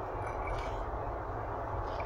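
Steady road and engine rumble heard from inside a pickup truck's cab as it drives along a highway.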